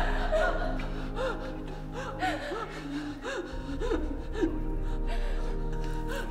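Someone crying in short, gasping sobs that come in quick succession, about three a second through the middle, over background music of steady held tones.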